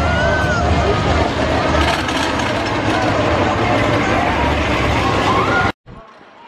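Wooden roller coaster train rumbling on its track under a crowd of shouting voices. The sound cuts off abruptly near the end, leaving quieter crowd ambience.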